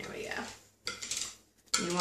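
A kitchen utensil scraping and knocking against the inside of a mixing bowl in two short bouts, as thick custard pie filling is scraped out of the bowl.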